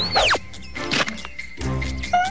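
Cartoon sound effect: a quick whistle-like squeal that swoops up high and straight back down in about half a second, at the start.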